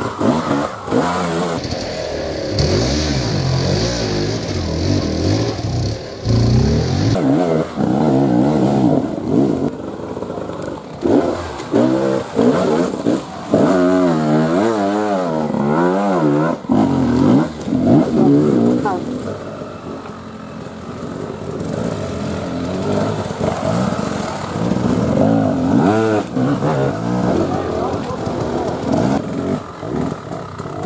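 Off-road enduro motorcycle engines revving hard under load on steep mud and dirt climbs, with rapid throttle blips making the pitch rise and fall quickly. The sound changes abruptly at edit cuts a couple of seconds in and again around seven seconds.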